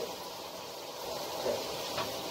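Shower water running steadily from a hand-held shower head, an even hiss, with a faint short vocal sound about one and a half seconds in.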